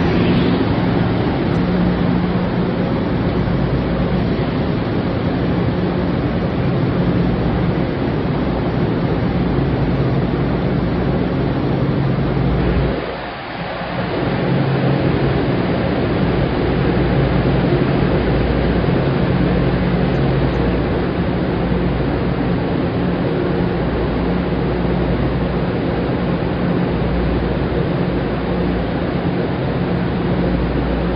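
Budd M3A electric multiple-unit train pulling out of an underground platform and running away down the track, heard as a loud, steady rumble with low droning hum tones. The loudness dips briefly about midway.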